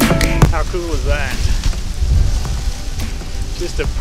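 Background music with a drum beat ends about half a second in. Wind then buffets the microphone as a fluctuating low rumble, with a brief voice-like sound around a second in and speech starting near the end.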